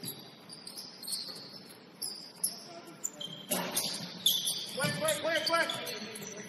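Basketball shoes squeaking on a hardwood gym floor, with a few sharp ball bounces in the middle and a player's shout near the end.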